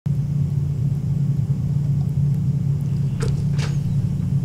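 Steady low hum of background noise picked up by the recording microphone, with two faint brief ticks about three seconds in.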